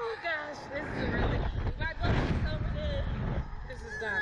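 Wind rushing over the onboard microphone of a Slingshot reverse-bungee ride in flight, a heavy steady rumble. Riders let out short cries and shrieks over it, just after the start and again near the middle.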